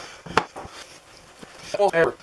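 A chef's knife chopping through a chocolate bar down onto a cutting board: one sharp knock about a third of a second in, then a couple of lighter knocks. A brief voice near the end.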